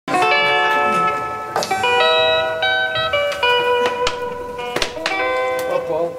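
Live band playing a song's instrumental intro: ringing, sustained guitar notes with acoustic guitar picking and bass underneath. A few sharp hand-drum strokes come in, about a second and a half, four seconds and five seconds in.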